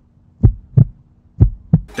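Heartbeat sound effect: two pairs of low double thumps, lub-dub, about a second apart, over a faint steady hum.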